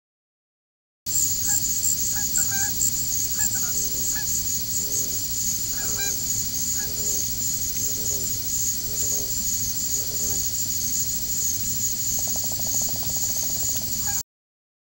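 Wood ducks calling: a run of short, downward-sliding calls about once a second, with a fast rattling call near the end, over a steady high hiss.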